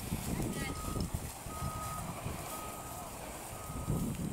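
A vehicle's reversing alarm beeping: a single steady pitch, about half a second on and half a second off, four beeps starting about half a second in.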